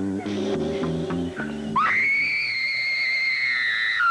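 Dramatic music of low stepped notes, then, about halfway through, a woman's long, shrill scream held at one high pitch as she is bitten by a snake.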